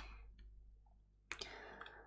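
Faint computer mouse clicks: a sharp one about a second and a half in, followed by a brief soft hiss, against near silence.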